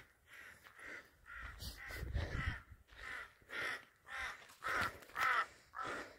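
A crow cawing over and over, about ten short calls at roughly two a second.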